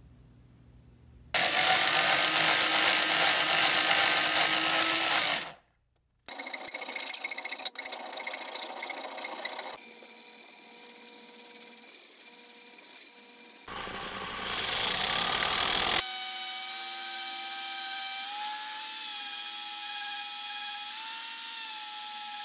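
Power-tool work in several short edited takes: a loud steady motor whine that starts abruptly about a second in and cuts off after about four seconds, then scraping and rubbing noise, and from about two-thirds of the way in a drill spinning a small sanding drum against a metal spinner blade, a steady whine that wavers slightly in pitch.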